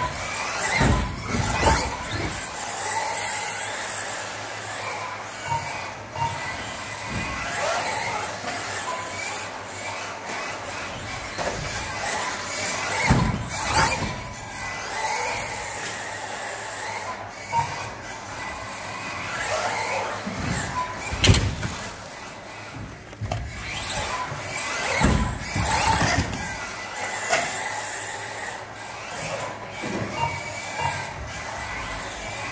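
Electric 1/10-scale RC buggies racing on a carpet track: motor and gear whine rising and falling as they accelerate and brake, tyres scrubbing on the carpet, with several sharp knocks, the loudest about two-thirds of the way through.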